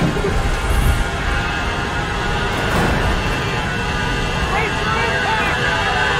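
Steady airliner engine and cabin noise with a deep rumble, with faint indistinct voices over it.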